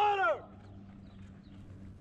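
A shouted call from a person, the last of three identical rising-and-falling calls, ending about half a second in, typical of a firefighter verbally signalling that water is flowing. After it, only a faint steady low hum.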